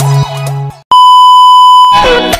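Electronic music that cuts out just under a second in, followed by a loud, steady electronic beep lasting about a second, a single pure tone like a censor bleep, with music starting again right at the end.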